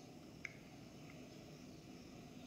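Near silence: room tone, with a faint short click about half a second in.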